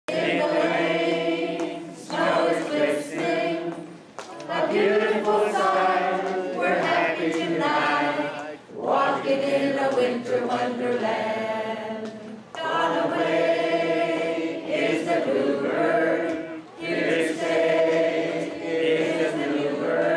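Unaccompanied singing led by a woman on a microphone through the hall's sound system, in long held phrases with short pauses for breath every few seconds.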